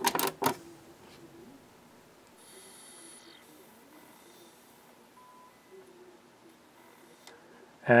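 A few sharp clicks as the top-loading CD lid of a Sony CMT-NEZ30 micro stereo is shut, then faint mechanical noise from the CD drive as it spins up and reads the disc.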